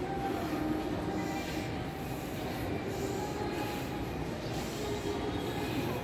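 Shopping mall concourse ambience: a steady wash of background noise with faint steady tones drifting through it.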